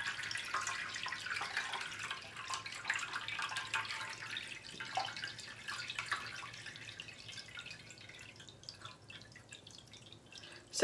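Water dripping and splashing from watery paper pulp, the drips thinning out and getting quieter toward the end.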